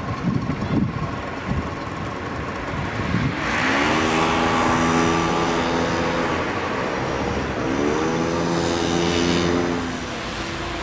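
A motor vehicle's engine pulling away: its note rises and holds steady, drops off at a gear change a little past halfway, then rises and holds again before cutting off near the end.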